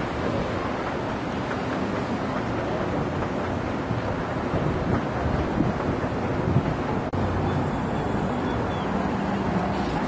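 Steady roar of street traffic on a busy multi-lane road, a continuous wash of engine and tyre noise with some wind on the microphone. The sound drops out for an instant about seven seconds in.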